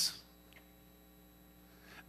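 Faint, steady electrical mains hum from the sound system during a pause in the speech.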